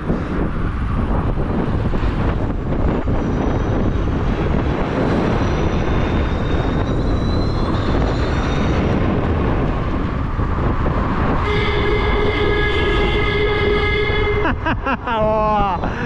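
Wind rushing over the microphone with tyre and road noise while riding an electric scooter, and a faint high whine rising in pitch. Past the middle a horn sounds steadily for about three seconds.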